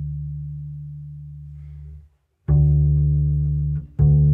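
Double bass played pizzicato, a slow walking-style bass line: a low plucked note rings on, fading slowly, and is stopped about two seconds in. After a short gap a new note is plucked and held until just before the end.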